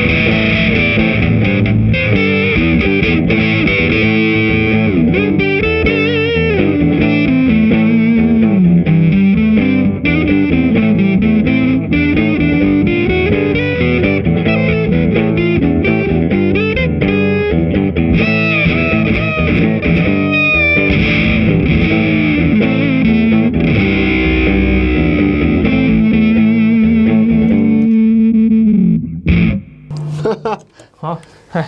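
Electric guitar played through a Supro Fuzz pedal with the effect switched on: a continuous fuzz-distorted lead line with bent notes. It ends on a long held note that stops about a second before the end.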